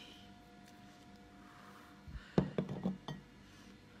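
A quick run of clinks and knocks, about a second long and a little past halfway, as a large sea snail shell is handled against a glass plate.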